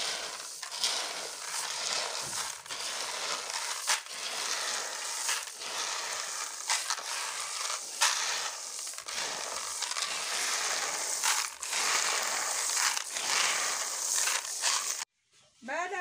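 Dry red beans rattling and shifting as hands stir them in a plastic basin, working an insecticide powder through the seed. The busy clicking rattle goes on without a break and stops suddenly near the end.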